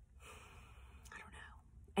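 A woman whispering faintly, breathy and without voiced tone.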